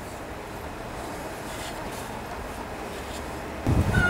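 Steady low background rumble outdoors, with one dull low thump near the end.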